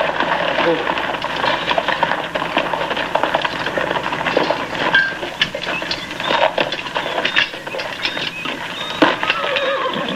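Horses' hooves clopping and horses milling about as a troop of cavalry rides in, under a hubbub of men's indistinct voices and shouts.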